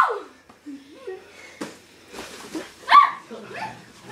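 A person's short, bark-like shout about three seconds in, loud enough to pass for a big dog, with scuffling and a single knock about a second and a half in.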